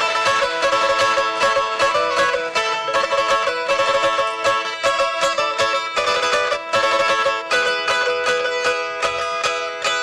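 A small plucked folk lute, a tamburica, played alone in rapid, even strokes over a steady sustained drone note.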